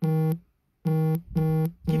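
Electronic beeping: a low, buzzy tone about half a second long, sounding four times at the same pitch, with a pause after the first beep and the last three close together.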